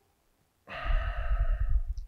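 A man's long sigh into a lapel microphone, starting under a second in and lasting just over a second, with the breath rumbling on the mic.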